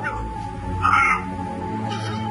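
Background film-score music with a steady held tone, and a short high-pitched cry about a second in.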